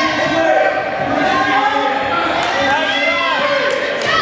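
Spectators shouting and yelling at once in a gymnasium, many overlapping voices echoing in the large hall.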